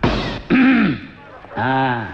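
A man loudly clearing his throat: a rough, harsh burst followed by short voiced 'ahem'-like sounds, the second near the end.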